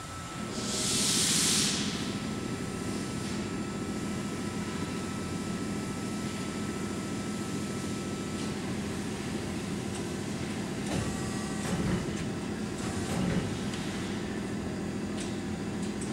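1995 LVD 240-ton hydraulic press brake running with a steady hum from its hydraulic system. There is a loud hiss of about a second and a half early on, and a few short knocks in the second half.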